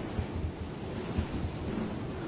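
Steady rushing sea noise with an uneven low rumble underneath.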